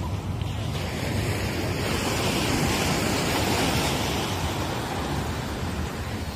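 Sea surf breaking on a beach: the wash of a wave swells from about a second in, peaks a few seconds in and eases off near the end. Wind rumbles on the microphone underneath.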